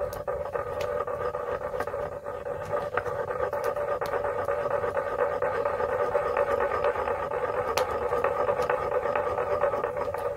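Granite pestle worked steadily round a granite mortar, stirring oil into a creamy sauce: a continuous scraping grind of stone on stone through the wet mix. Faint crackles of a wood fire come and go over it.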